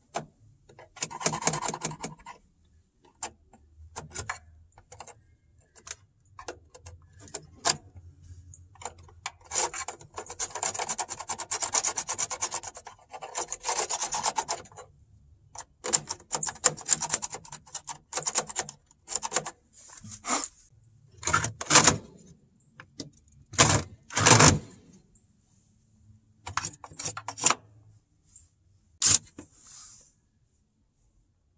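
Ice being scraped and cleaned out of an automatic chicken coop door's track, which is iced up and keeping the door from working: irregular bursts of scraping and rubbing with short pauses between them, and a few louder scrapes about two-thirds of the way through.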